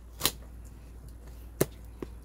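Scissors snipping through a cardboard toy box: two short, sharp snips about a second and a half apart.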